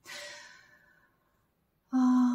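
A woman's audible breath, a sigh that fades away over about a second, followed near the end by a short voiced hesitation sound.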